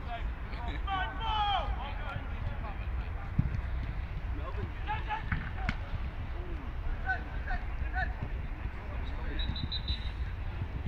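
Distant shouts of footballers calling during play, over a steady low rumble, with two short sharp thuds of the ball being kicked, one a few seconds in and one about halfway through.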